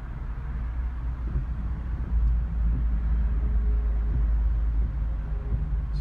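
Steady low rumble inside the cabin of a 2017 Ford Explorer Sport with its engine running, swelling about two seconds in, as the front-camera washer is triggered and sprays cleaner onto the front camera.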